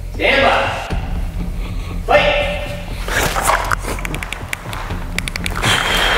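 Shots from a training pistol: a run of sharp, fairly quiet clicks in quick succession, in two clusters about two seconds apart, as pairs of rounds are fired at a swinging target. Short called commands come before them.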